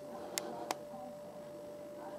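Two short, sharp clicks about a third of a second apart, over a faint steady hum.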